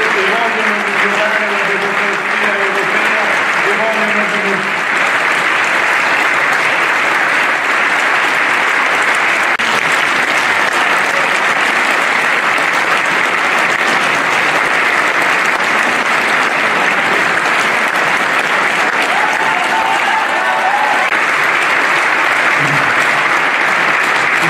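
A large audience applauding steadily and without a break, dense clapping from a full hall. Voices sound over it in the first few seconds.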